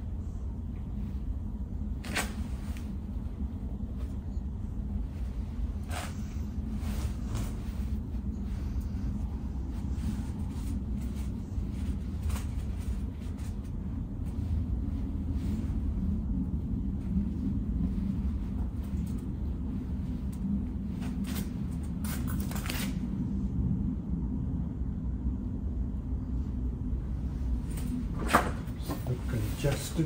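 Steady low rumble with a few scattered light knocks and clicks as young cedar trees are shifted about in a bonsai pot.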